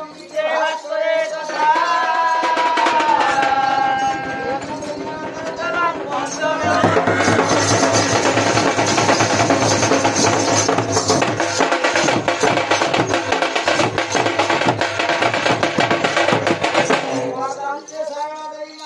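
Folk band of barrel drums and brass horns playing for a dance. A lone melodic line with gliding pitch carries the first six seconds, then the full band comes in loud with rapid drumming over a held low note, stopping just before the end.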